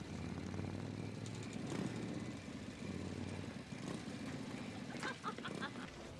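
Vehicle engines running with a low, steady rumble that eases after about three and a half seconds, with faint voices near the end.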